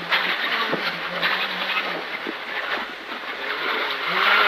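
Rally car on a gravel stage heard from inside the cabin: engine and tyre noise with stones clicking and rattling against the underbody. The car is slowing for a tight corner, easing off around the middle while being shifted down from fourth.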